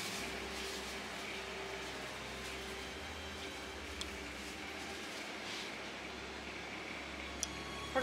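Quiet, steady hum and hiss of a grocery shop interior with refrigerated chest freezers, and one light click about four seconds in.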